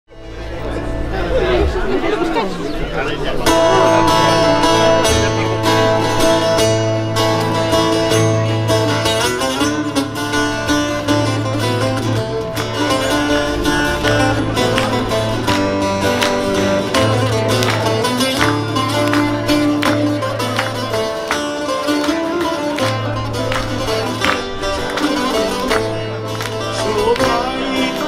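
Live instrumental introduction to a Greek song on steel-string acoustic guitar, with long low bass notes underneath, starting after a few seconds of audience chatter. A man's singing voice comes in near the end.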